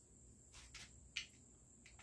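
Near silence with a couple of faint short clicks, about half a second in and just past a second in, from a Marlin 1894C lever-action rifle being handled.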